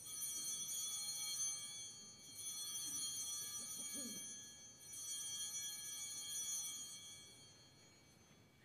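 Altar (sanctus) bells rung three times at the elevation of the consecrated host, each stroke a bright cluster of high ringing tones that rings on and fades before the next.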